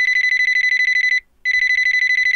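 Electronic telephone ringer trilling: a fast-pulsing high tone in two rings of just over a second each, separated by a short break.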